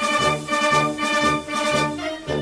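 Brass band music with a steady bass beat.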